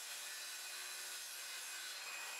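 Handheld circular saw cutting a wooden plank, heard faintly as a steady, even noise.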